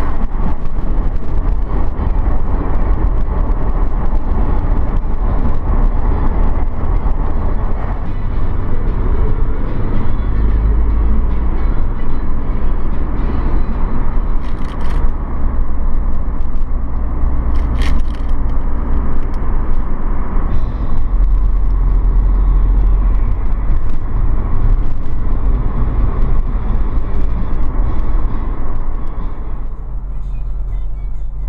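Steady engine and tyre noise of a car travelling at highway speed, with two brief sharp noises about halfway through.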